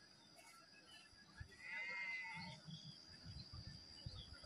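A faint animal call, one brief wavering cry about halfway through, over quiet outdoor background with a steady high-pitched whine.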